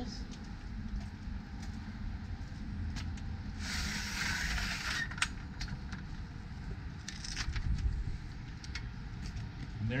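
Aluminium arm of a manual RV awning being slid up and latched: a hissing slide a few seconds in, then several sharp metal clicks and rattles as the arm locks into its notch, over a steady low rumble.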